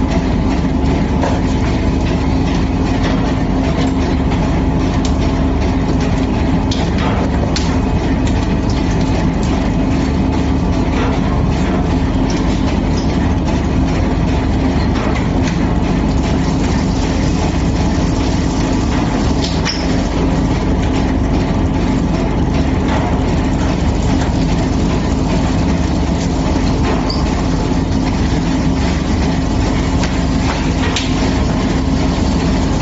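Silicone rubber mixing mill running: its rollers and gear motors make a loud, steady mechanical drone with a constant hum, as a sheet of silicone stock is worked on the roll.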